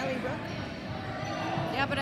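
A basketball bouncing on a hardwood court during play, with spectators' voices around it.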